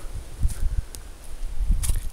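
Footsteps over cleared ground covered in dry leaves and twigs, with scattered crackles and a couple of sharp snaps about a second in and near the end, over an uneven low rumble on the microphone.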